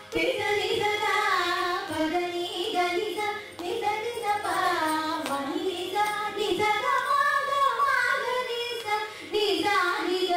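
Two women singing a Carnatic ragamalika, their voices gliding through ornamented gamakas, over a steady drone.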